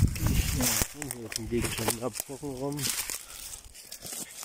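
A man speaking in short, low phrases, with rustling and handling noise near the start as the camera moves through undergrowth.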